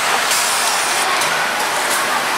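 Steady machine noise of an automated sewing workstation, with short bursts of compressed-air hiss from its pneumatic clamps shortly after the start and again near the end.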